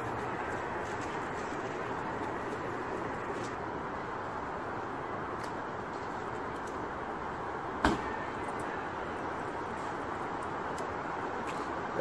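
Steady outdoor city background noise, with one short, sharp thud about eight seconds in.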